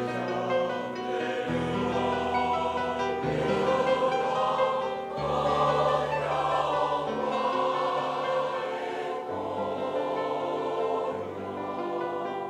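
Mixed choir of men and women singing in harmony, held chords shifting every second or two.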